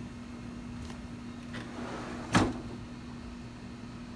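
A steady low hum with a single sharp knock a little over two seconds in, the loudest sound, and a couple of faint ticks before it.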